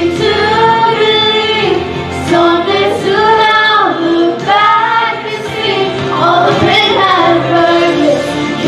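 A woman and a teenage girl singing a sacred song together into handheld microphones, in long held notes.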